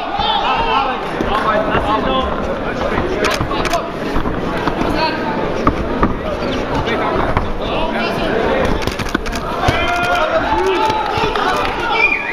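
Ringside crowd at a boxing bout: many overlapping voices shouting and calling out, with scattered sharp knocks.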